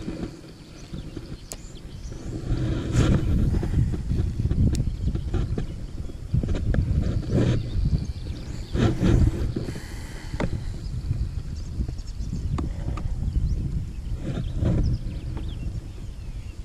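Wind buffeting the action-camera microphone: an irregular low rumble that swells about two seconds in and gusts on and off, with a few short knocks from handling the rod and reel.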